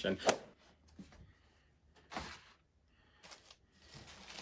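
A cardboard gift box being opened by hand: faint rustles and scrapes as the ribbon comes off and the lid is lifted, with a short swish about two seconds in and a few light clicks.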